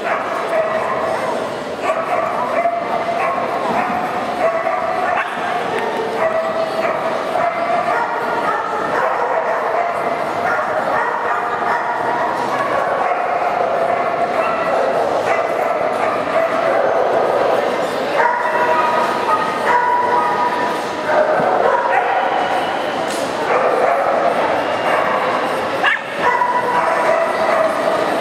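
Dogs barking and yipping again and again over a steady hubbub of voices, echoing in a large indoor hall.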